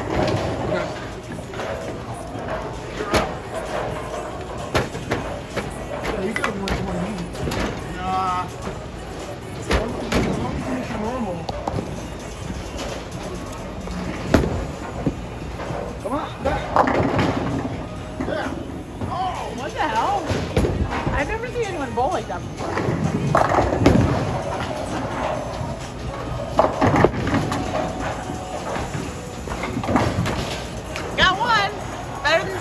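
Bowling alley din: balls rolling down the lanes and pins being knocked down, with sharp knocks now and then, over background music and voices.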